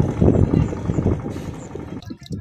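An engine running with a steady low rumble, growing quieter in the second half.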